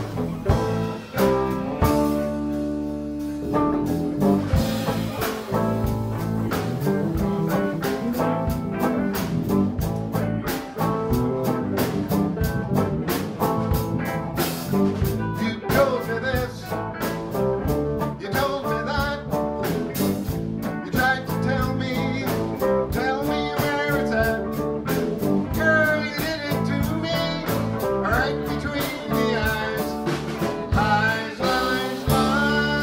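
Live blues band playing: electric guitars, bass and drum kit with a steady beat.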